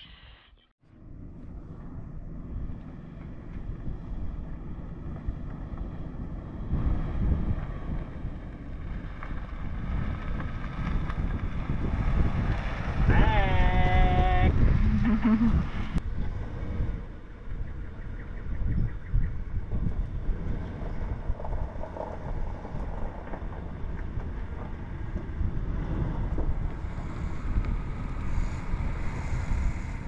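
Wind buffeting the microphone: an uneven low rumble that starts about a second in, builds up and is strongest around the middle. A short spoken word comes near the middle.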